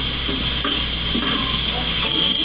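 Steady hiss and low hum of an old film soundtrack played back from a screen, with faint muffled sounds underneath.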